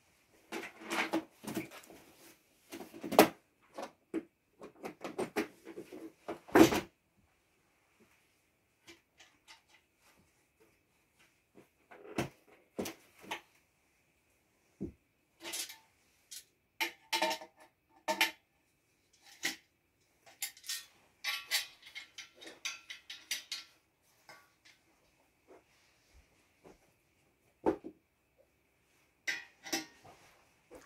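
Handling noise: scattered knocks, clicks and rustles as a person moves about and handles a trombone, busiest in the first seven seconds and again about two-thirds of the way in, with quiet gaps between.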